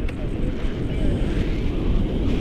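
Airflow buffeting the camera's microphone in flight under a paraglider: a loud, steady, low rumble of wind noise.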